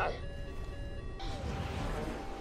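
Film soundtrack of fighter-jet engine rumble under held notes of orchestral score music. About a second in, a louder rush of jet noise swells up and stays.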